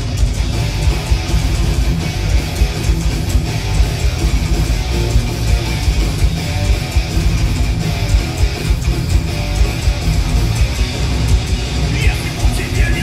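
Live thrash metal band playing an instrumental passage: distorted electric guitars and bass over drums with a steady, driving beat, loud throughout.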